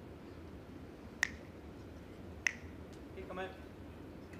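Two sharp clacks of composite lawn bowls striking other bowls in the head, about a second and a quarter apart, each with a brief ring: a delivered bowl hitting bowls clustered around the jack.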